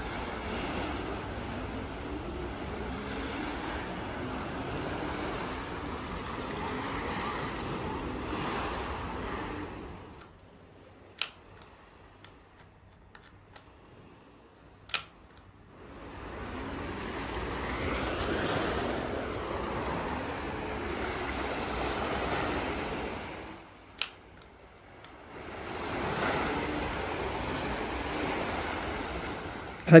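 Sea waves washing on a shingle beach, heard in long stretches broken by quieter gaps. A few single sharp clicks sound in the quiet gaps.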